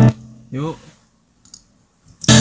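Song playback cuts off suddenly, then a man gives a short vocal sound with a sliding pitch about half a second in. After that it is nearly quiet, with one faint click about a second and a half in.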